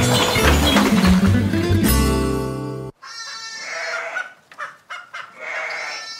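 Outro music that ends on a held chord and cuts off about three seconds in. Then come a few short, separate pitched cries, quieter than the music, from a source that can't be named.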